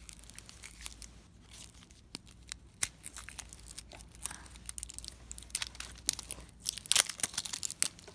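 Plastic shrink wrap being torn and peeled off a cylindrical toy container by hand, a run of crinkling crackles and short tearing sounds, loudest near the end.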